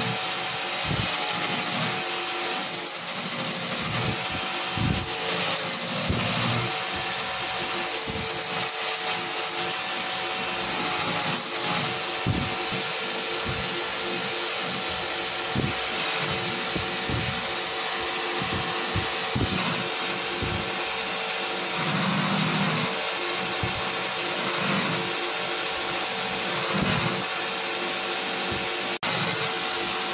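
Belt grinder running with a stainless steel knife blade held against its abrasive belt: a steady grinding hiss over the machine's hum, with scattered low knocks. It drops out for a moment near the end.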